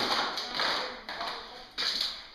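Footsteps crunching and scraping over broken linoleum flooring debris on a bare floor, several gritty steps in a row.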